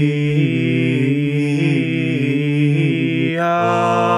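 A six-voice a cappella vocal ensemble singing held, close chords, with individual voices stepping up and down between pitches. About three and a half seconds in, the chord changes to a new voicing.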